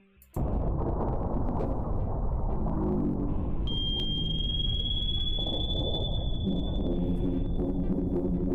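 Underwater ambience on the played footage's soundtrack: a steady, deep rumble starts abruptly just after the start. About four seconds in, a long, high, steady sonar-like tone joins it, faint low notes sounding beneath.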